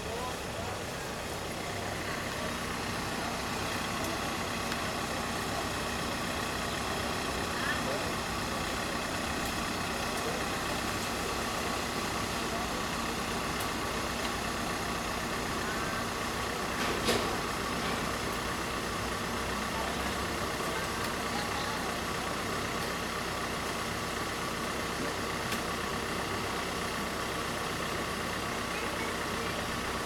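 Steady hum of vehicle engines running, with voices in the background and one sharp knock about halfway through.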